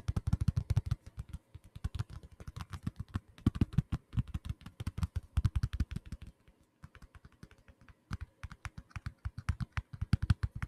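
Fingertips tapping rapidly on a small brown handheld case held right against the microphone, many taps a second, with a softer stretch a little past the middle.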